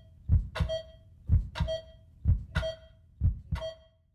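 Heartbeat sound effect: four low lub-dub thumps about a second apart, each followed by a short beep.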